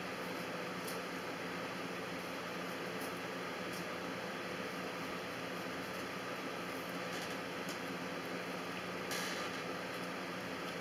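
Steady background hiss and hum, with a few faint, brief scrapes of a knife paring the skin from a prickly pear cactus pad on a plastic cutting board, and a slightly louder short rustle near the end.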